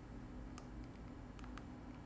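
Quiet room tone with a faint steady low hum and a few light clicks spread through it, from grading controls being adjusted.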